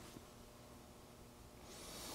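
Near silence: room tone, with a faint hiss rising near the end.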